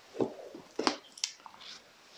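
A picture book being handled and opened, with a few short knocks and paper rustles.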